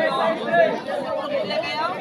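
Crowd of spectators chattering, many voices overlapping.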